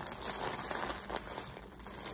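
Plastic packaging crinkling irregularly as hands handle it.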